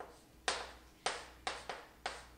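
Chalk tapping against a chalkboard: four sharp taps at uneven intervals, each dying away quickly.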